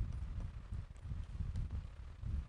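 A pen writing on a board: dull, irregular low knocks and rubbing as stars are marked onto the board.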